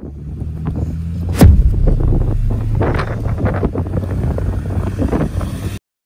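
Strong wind buffeting the microphone in a low, rough rumble, with footsteps on pavement and a sharp click about a second and a half in. The sound cuts off suddenly just before the end.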